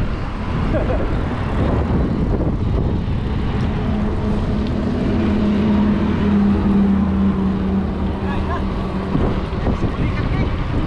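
Wind buffeting a bike-mounted camera's microphone while riding on an asphalt road. A steady hum comes in about four seconds in and fades out near nine seconds.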